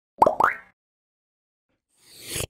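Two short plop sound effects about a fifth of a second apart, each rising quickly in pitch: an animated logo sting.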